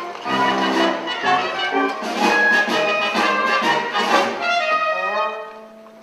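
Pit orchestra playing lively, brassy dance music. Near the end it thins and quiets to a few held notes.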